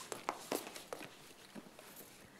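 Quiet footsteps of a woman walking: a handful of irregular steps.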